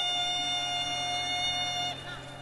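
A woman's voice singing one long high note held steady, over a low steady drone underneath; the note cuts off just before the end.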